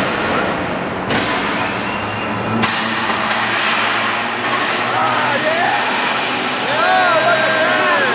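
Heavyweight combat-robot fight at close range: a loud, continuous rushing noise over a low steady hum, with sudden surges about one and two and a half seconds in. In the second half, spectators shout and whoop with rising-and-falling cries.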